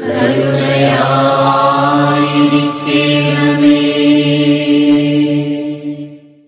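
Malayalam Christian devotional song: voices sing a long, chant-like held line over sustained backing chords. It fades out at the end.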